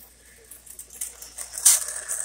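Small 242 O-gauge toy steam locomotive and its cars running on tubular track: a light, noisy clicking and rattling from the wheels and motor, with a sharper click about three-quarters of the way through.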